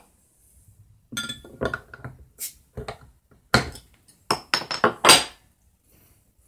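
A glass bottle of hard cider being handled and uncapped, a string of sharp glass clinks and knocks, the loudest near the end.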